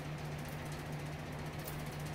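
A steady low hum with a faint hiss and light ticking: room background with no speech.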